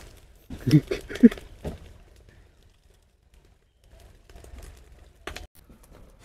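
A few short voice sounds about a second in, then near quiet, with faint clicks and one sharp knock near the end as sticks of firewood are handled under a spit-roasted chicken.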